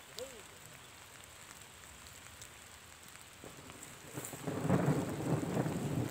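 Faint outdoor background hiss, then from about four seconds in a louder, uneven rustling noise as the phone's microphone pushes through standing wheat.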